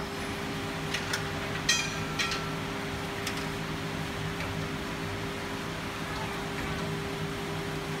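Steady machine hum with one constant tone over a background hiss, broken by a few faint clicks and a short high beep about two seconds in.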